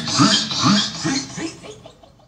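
Vinyl record being scratched on a turntable: quick rising sweeps at about three strokes a second, fading out near the end.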